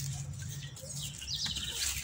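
Bird chirping: a quick run of short high notes in the second half, over light rustling and footsteps.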